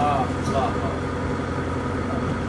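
Engine of a double-deck cruise boat running with a steady low rumble.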